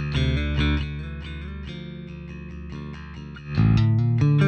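Electric bass guitar played back through the Gallien-Krueger 800RB bass amp plugin, a plucked bass line of changing notes. It starts loud, falls softer after about half a second, and comes back louder near the end.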